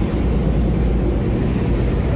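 A steady low rumble with no voices over it.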